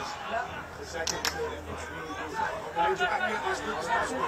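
Voices of players and people at the ground calling out and chattering on an Australian rules football field, with two sharp clicks a little after a second in.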